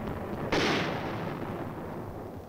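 A 4.2-inch heavy mortar firing: one sharp blast about half a second in, dying away over the next second and a half.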